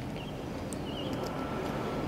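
Steady low background rumble, with faint small clicks of plastic fountain-pen ink converters being handled.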